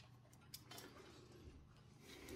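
Near silence: faint background with a few soft, short clicks.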